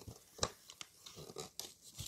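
Hands handling a cardboard toy box and its plastic blister packaging: one sharp click about half a second in, then a few lighter taps and crinkles.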